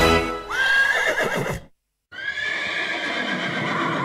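The song's last chord ends, followed by a horse whinny sound effect: a rising call that wavers at its top. It cuts off for a moment near the middle, then a steadier stretch of horse sound runs on.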